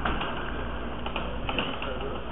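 Handling noise from a camcorder being moved and turned on a table: a few light clicks and knocks, about one second in and again around a second and a half, over a steady low hum.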